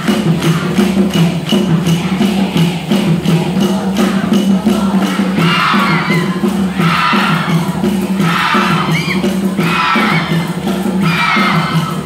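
Cheer music with a fast, steady percussion beat. From about halfway, a group of voices shouts a chant in short bursts about every second and a half.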